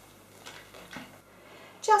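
Mostly quiet, with two faint light knocks about half a second and a second in as kitchen spatulas are handled over a baking tray of batter. A woman starts speaking near the end.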